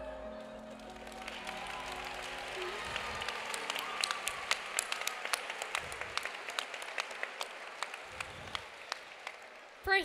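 Audience applause that builds about a second in, with sharp single claps standing out, then thins out near the end. Held chime-like musical tones fade away in the first second or two.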